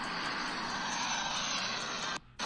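Steady rushing roar of a rocket launch, starting suddenly just before and holding level without letting up.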